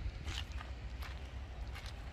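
Quiet footsteps on gravel, about three steps, over a low steady rumble.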